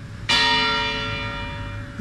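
A single stroke of a church bell about a quarter of a second in, its many-toned ringing fading slowly away.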